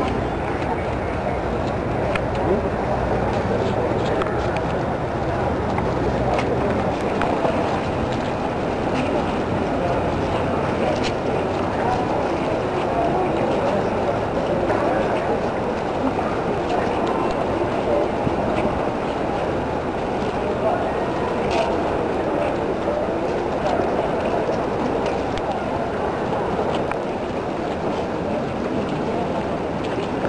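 Large crowd of marchers: a steady murmur of many low voices and movement, with no single voice standing out.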